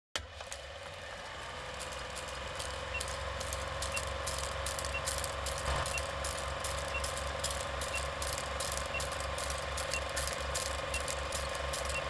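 Old-style film projector running: a steady mechanical rattle with crackling clicks and pops and a steady hum, growing slowly louder. A short faint pip sounds once a second from about three seconds in, timed to the film countdown leader.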